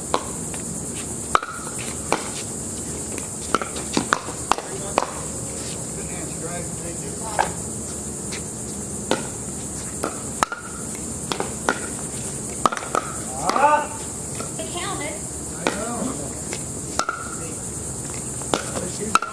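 Pickleball rally: paddles striking the plastic ball, with ball bounces on the hard court, a string of sharp pocks at irregular intervals. Players' voices are heard briefly about two-thirds of the way through, over a steady high-pitched hiss that drops out for a moment just after the middle.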